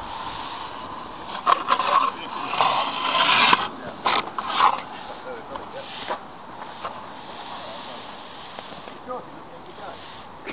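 Close scraping, rustling and clicking handling noise on the microphone, bunched in the first half and loudest around three seconds in, then a fainter steady hiss.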